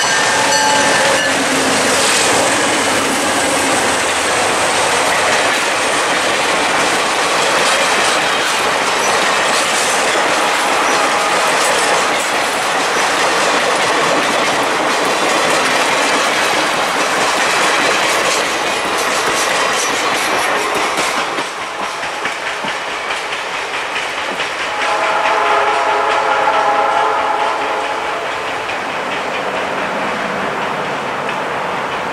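Diesel-hauled Adirondack Railroad passenger train passing close by, the locomotives followed by a string of passenger cars whose wheels click over the rail joints. The horn sounds briefly at the start and again, farther off, after the last car has gone by about two-thirds of the way through.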